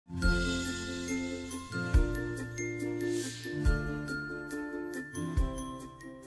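Short electronic intro jingle: held synth chords with bright bell-like chimes over four evenly spaced deep bass hits, and a brief whoosh about three seconds in.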